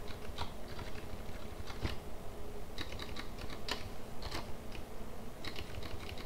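Typing on a computer keyboard: irregular key clicks, some coming in quick short runs.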